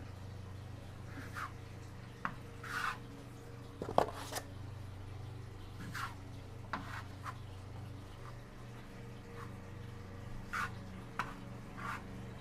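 Wide taping knife scraping joint compound from a mud pan and spreading it over a drywall patch: short, scattered scrapes with a sharp knock about four seconds in, over a steady low hum.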